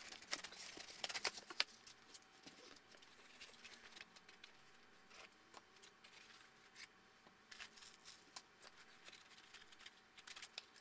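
Faint, sparse handling noise of foam packing and printer parts being moved inside a cardboard box: soft rustles and light clicks, busiest in the first two seconds and then only occasional ticks.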